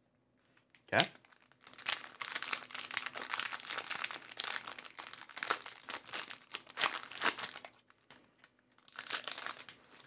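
Foil trading card pack being torn open and crinkled by hand: a dense crackling that runs for about six seconds, stops briefly, then comes back in a short burst near the end.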